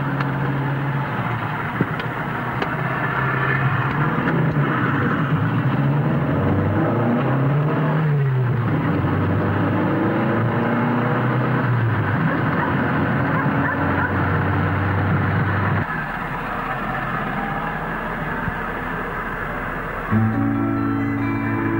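Car engine and road noise heard from inside a moving car, the engine note rising and falling repeatedly as it speeds up and slows. About 16 s in the sound changes abruptly to a steadier, quieter run.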